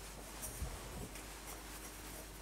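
Faint rustling and scraping with a few light clicks: hands handling small objects and cloth, over a low steady room hum.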